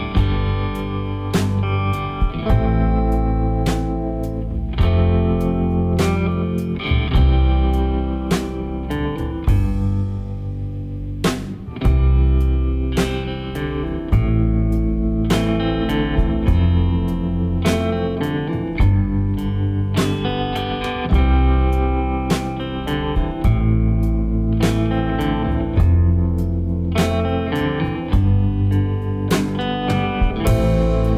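Background music: a guitar-led blues-style track with slide guitar, a steady beat and a bass line.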